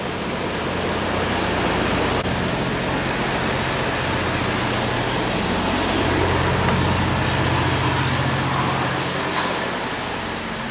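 Steady low hum of idling diesel truck engines under a broad, even rushing noise.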